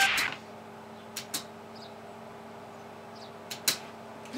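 The last of the music fades out at once, leaving a quiet room with a faint steady hum. Four small clicks or knocks come in two pairs, one about a second in and one near the end.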